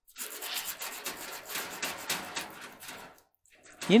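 Gloved hands rubbing and scraping at the dryer's broken heating-element coil wire, a rasping noise in quick strokes that stops about three seconds in.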